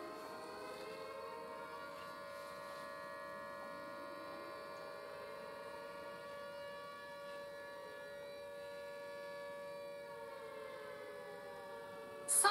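A steady electronic-sounding hum of several held tones, with slow sweeping shifts in its colour.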